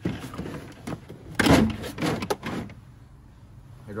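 A hard plastic tool case being handled and slid on a steel locker shelf: a scrape about a second and a half in, then a couple of knocks.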